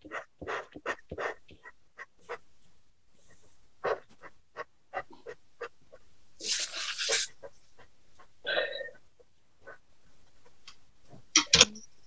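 Short scratchy strokes of a wax burnishing pencil rubbed hard over coloured pencil on paper, two or three a second, heard over a Zoom call. A brief hiss comes a little past halfway.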